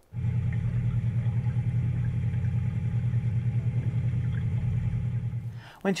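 A low, steady engine hum with a fast, even pulse. It cuts in suddenly and fades out near the end.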